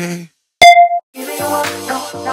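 Workout music cuts out, and a single short electronic beep sounds: an interval-timer signal marking the start of the next exercise. A new music track with a steady beat begins just after.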